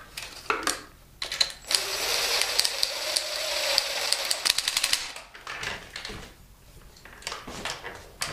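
Cordless impact driver hammering a thread tap into a deep head bolt hole in an aluminum LS engine block, a rapid rattle lasting about three and a half seconds, with a few separate clicks before and after.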